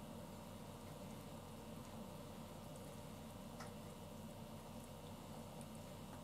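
Quiet stirring of thick beef curry in a pot with long wooden cooking chopsticks, with a light click of the chopsticks against the pot about halfway through, over a steady low hum.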